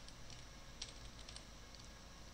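Computer keyboard keystrokes, a few separate faint clicks with short pauses between them, over a faint steady background hum.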